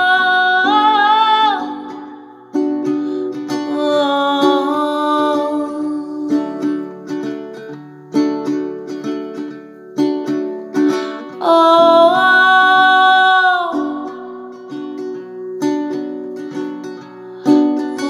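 A woman's voice holds long sung notes without words at the start and again around twelve seconds in, over plucked acoustic guitar; in between, the guitar plays on its own.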